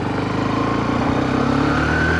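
Honda CB125F's single-cylinder 125 cc engine pulling the motorcycle away, its note rising steadily as it accelerates.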